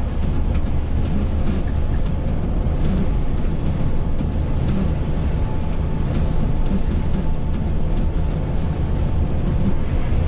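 Volvo B9R coach cruising at highway speed, heard from the driver's cab: a steady low rumble of the rear-mounted diesel engine mixed with tyre and road noise.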